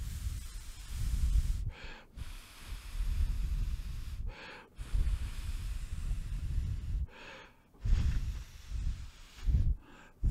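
Breath blown in long puffs onto a Rode NTG5 shotgun microphone fitted with its furry windscreen, heard as a low wind rumble, with a quick inhale between puffs. About four puffs, each a second or two long. The windscreen damps the blowing but the rumble still comes through.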